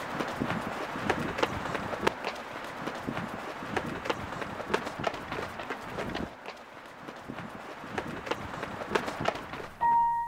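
Quick, irregular footsteps of a person running on pavement, over a steady background hiss, easing off briefly about six seconds in.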